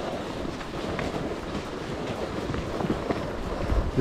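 Footsteps of a person walking, under a steady noise.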